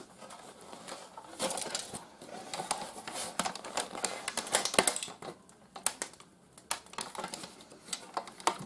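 Sheet-metal chassis and plastic parts of a broken Blu-ray player clicking, rattling and scraping as it is handled and pulled apart by hand. A quieter stretch comes about two thirds of the way in.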